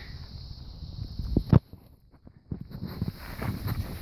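Footsteps on gravel as the camera is carried closer, with a single sharp knock about a second and a half in.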